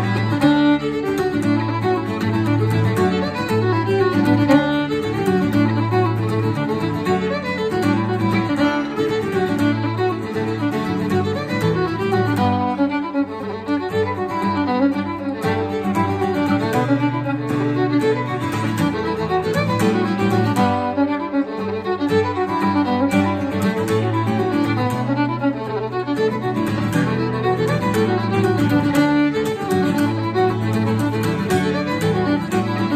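Fiddle playing a reel in D, with acoustic guitar strummed in accompaniment, at a steady, unbroken pace.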